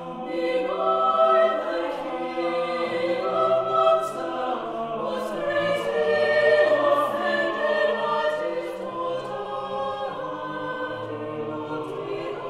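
Chamber choir singing a slow classical choral piece: held chords in several voice parts, shifting every second or two, with the soft hiss of sung consonants now and then.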